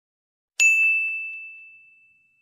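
A single bright ding sound effect, about half a second in, ringing one clear high note that fades out over about a second and a half.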